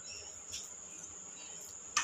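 Quiet kitchen room tone under a thin, steady high-pitched whine, with a few faint small handling sounds; a single sharp clink of a utensil against a pan or plate comes right at the end.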